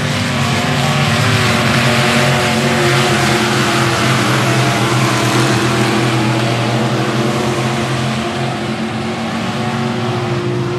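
Midwest modified dirt race cars' V8 engines running hard at racing speed around the track. The sound swells over the first few seconds as the cars come by, then eases a little near the end.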